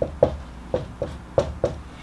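Marker tip tapping and scratching on a whiteboard while letters are written: about six short, light taps over two seconds.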